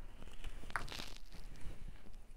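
Paper and card rustling and scraping as hands slide and adjust them on a cutting mat, in a few short scratchy strokes bunched near the middle.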